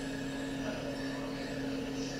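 Steady low hum over a faint even hiss, with no speech.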